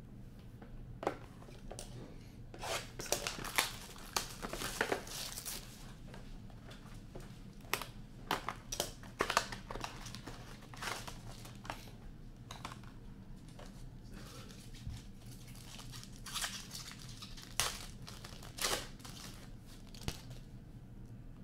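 Trading-card pack wrappers being torn open and crinkled by hand, in several irregular bursts of tearing and crackling.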